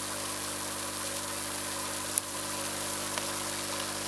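Small aquarium air pump running with a steady hum, with a fizzing hiss of air bubbling into the tank water, which is frothing. The pump sits on a piece of cloth to damp its noise. A faint click about two seconds in.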